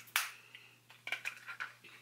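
Small plastic makeup compacts being handled and set down on a table: one sharp click just after the start, then several lighter clicks and taps about a second later.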